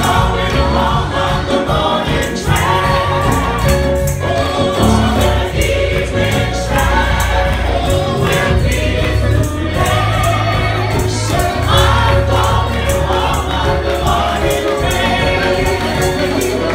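Gospel choir singing through microphones and a PA, with keyboard accompaniment, a strong bass and a steady percussive beat.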